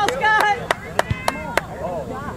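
About five sharp hand claps in a quick, even rhythm, roughly three a second, with distant voices calling out across the field.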